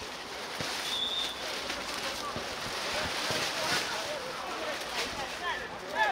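Players shouting and calling out across an outdoor football pitch over a steady background of wind and ambient noise, with a few faint knocks of the ball being kicked.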